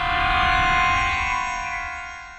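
Star Trek-style transporter beam-in sound effect: a shimmering hum of several steady tones over a rushing hiss, swelling to a peak about a second in and then fading away.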